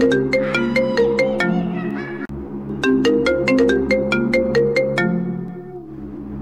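Mobile phone ringtone: a bright melody of quick struck notes that plays through twice, with a brief break about two seconds in. It stops near the end as the call is answered.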